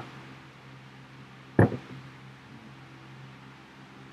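A single sharp knock about one and a half seconds in, with a fainter tap just after, as a drinking vessel meets the tabletop, over a low steady room hum.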